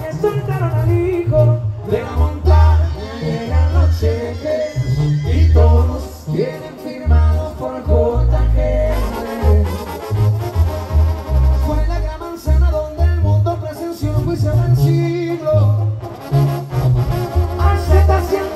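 Live Mexican banda playing an instrumental passage: a trumpet and trombone section carries the melody over a deep, bouncing bass line in short, rhythmic notes.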